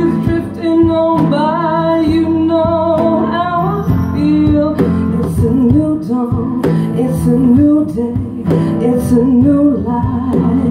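Guitar strummed live, with a woman singing a slow melody of long held notes over it.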